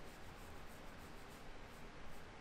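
Fingertips rubbing and scratching through hair on the scalp during a head massage: a soft, scratchy rustle in quick repeated strokes.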